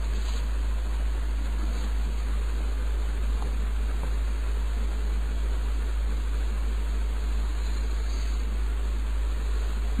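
Steady hiss over a constant low hum, with no other events: the background noise of the recording between two recited passages.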